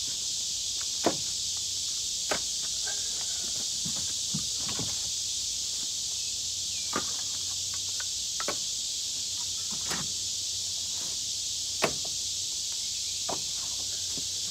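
Split firewood being stacked by hand onto a woodpile: short wooden clunks at irregular gaps of a second or two, the loudest about a second in and near the end. Under them runs a steady high insect drone.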